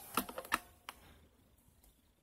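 A quick run of small clicks and taps from hands handling the recording device or its light, followed by one more click about a second in.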